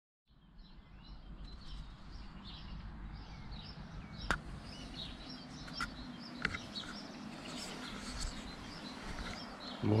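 Small songbirds chirping again and again over a steady low outdoor background, with a few sharp clicks in the middle; a man's voice begins right at the end.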